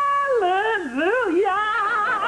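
A woman's high-pitched shriek of glee at winning: held on one note for a moment, then swooping down and up in a warbling whoop.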